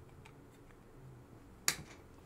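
Faint room tone, then one sharp click near the end.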